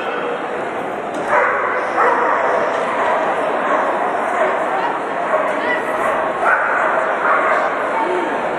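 Dog barking and yipping repeatedly while running an agility course, starting about a second and a half in, over the steady noise of an arena crowd.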